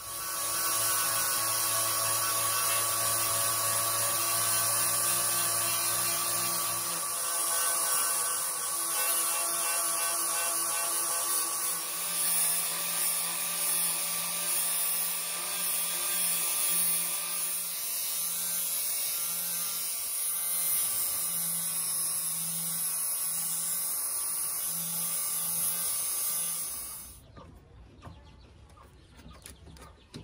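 Angle grinder fitted with a wire brush running steadily against a clamped forged steel blade, scouring off rust and forge scale. The motor's whine stops a few seconds before the end.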